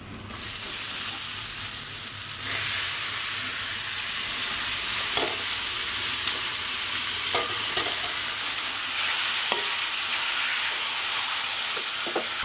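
Turmeric-coated prawns sizzling in hot oil and ground masala in a kadai: the sizzle starts suddenly about half a second in as the prawns drop into the pan and grows louder a couple of seconds later. A few light knocks of a wooden spatula against the pan.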